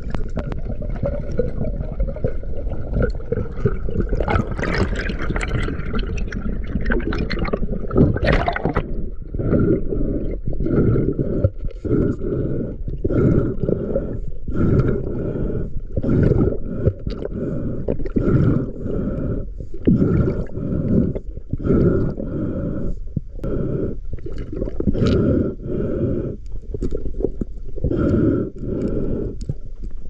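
Muffled underwater water noise against an action-camera housing as a spearfishing diver swims up after a speared fish. There are several seconds of irregular rushing with a sharp surge about eight seconds in, then rhythmic whooshes a little more than one a second from the diver's fin kicks.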